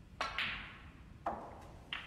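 A snooker shot: the cue tip strikes the cue ball and, a split second later, the cue ball hits an object ball with a sharp clack. Two more ball clicks follow about a second and a half later, as the balls strike each other or the cushions.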